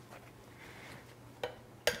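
Faint rustle of a paper towel patting a pineapple cube dry, followed by two light clicks near the end.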